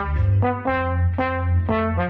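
Slide trombone playing a rock-style shuffle melody: a run of separate, clearly started notes, about five in two seconds.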